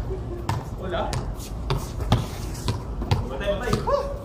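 A basketball dribbled on a concrete court, bouncing about twice a second.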